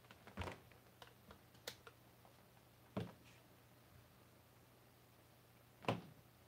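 A few separate light knocks and clicks as a handheld digital multimeter and its test leads are handled and set down on a workbench, the loudest knock near the end.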